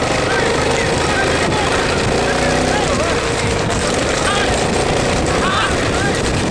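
A motor vehicle's engine runs steadily under men's shouts, the cries of the cart crew and riders driving the oxen on.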